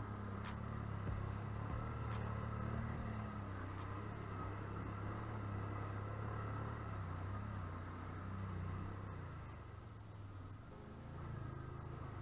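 ATV engine running at a steady low speed through trail mud and water, with a few sharp knocks in the first couple of seconds. The engine eases off briefly near the end.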